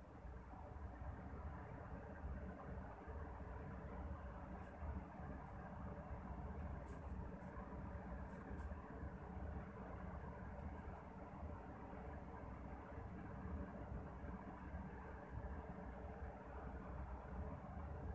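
Balushahi dough rounds frying in hot oil in a kadhai on a low flame: the oil bubbles around them with a faint, steady sizzle. A few light clicks sound in the middle.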